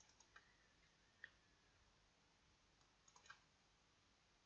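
Faint computer mouse clicks against near silence: a quick double-click near the start, a single sharper click about a second in, and a short run of three clicks near the end.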